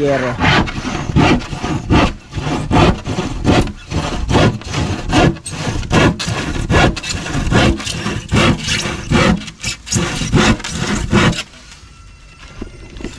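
A sharp hand saw cutting through a sheet of plywood in quick, even back-and-forth strokes, about two to three a second. The sawing stops shortly before the end.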